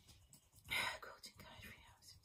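A woman whispering briefly under her breath, one short breathy murmur a little before the middle, otherwise quiet.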